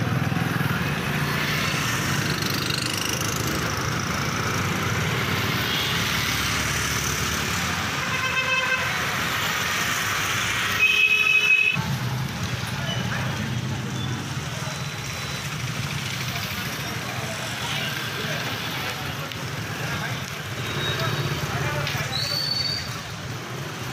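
Street noise with indistinct voices and passing vehicles. A vehicle horn sounds briefly about eight seconds in, and a short, louder high tone follows around eleven seconds, after which the sound changes abruptly.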